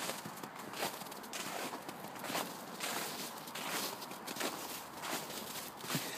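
Footsteps walking through snow at a steady pace, a step a little under every second.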